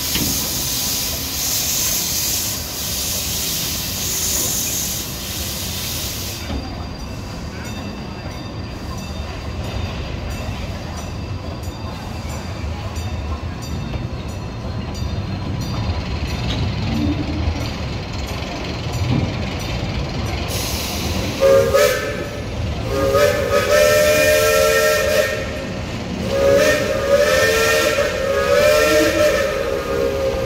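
Steam locomotive pulling out: loud steam hissing with a pulsing beat for the first six seconds, then the low rumble of passenger cars rolling past. About twenty seconds in, the locomotive's steam whistle sounds a chord of several tones in three or four blasts, the middle ones long; these are the loudest sounds.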